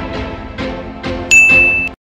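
Outro music with a beat, then about a second in a loud, clear bell 'ding' sound effect, the notification sound of a subscribe-button animation. It rings for about half a second before everything cuts off suddenly.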